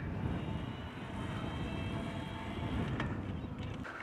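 Low rushing wind and rolling noise of a bicycle ride, picked up by a wireless lavalier mic hidden in a cap behind a furry windscreen. A faint, high, steady whine runs underneath.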